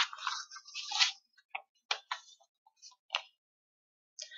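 A brief rustle, then about five short, sharp clicks at irregular intervals, as of small objects or papers being handled close to the microphone.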